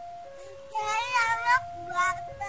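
Level-crossing warning alarm sounding two steady tones that alternate about once a second, signalling an approaching train. Over it, a louder wavering cry rises and falls from about a third of the way in, followed by a shorter cry near the end.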